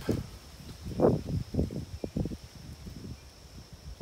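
Irregular low thumps and rustling close to the microphone, the loudest about a second in: handling and movement noise as the camera and the man holding up the string shift position.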